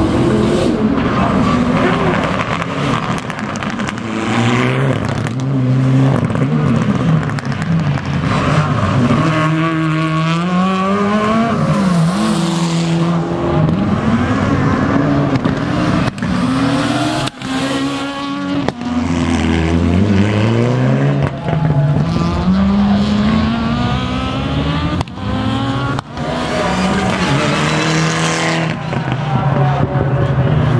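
Rally cars racing through a circuit stage one after another, their engines revving hard and dropping back through gear changes as they brake and accelerate through the corners, with some tyre squeal.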